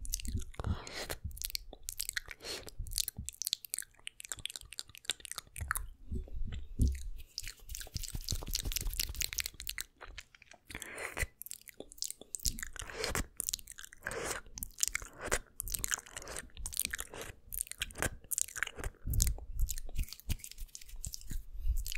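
Wet ASMR mouth sounds made right at a Blue Yeti condenser microphone: a dense run of sharp tongue and lip clicks and smacks, with a few longer, softer breathy stretches.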